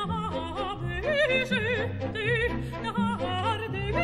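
Operatic singing with strong vibrato, accompanied by a symphony orchestra.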